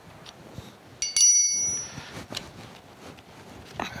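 Metal clink as a dividing head's steel index crank handle is worked off its shaft: one sharp strike about a second in that rings like a small bell for about half a second, with faint handling sounds around it.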